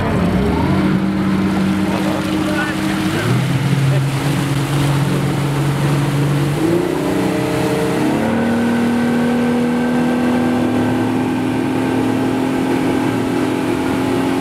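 Motorboat engine running under way: it comes up about a second in, its pitch shifts in several steps, and from about eight seconds in it holds a steady, higher note.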